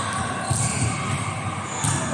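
Two sharp volleyball impacts about a second and a half apart, each ringing on in the echo of a large indoor sports hall.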